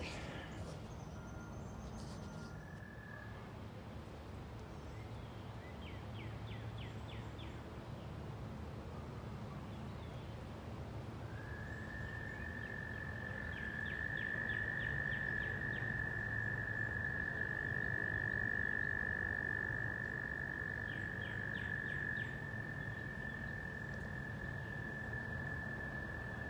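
Frogs calling: one long, steady high trill begins about eleven seconds in and holds to the end. A brief trill comes near the start, and three short rattling call series sound higher up.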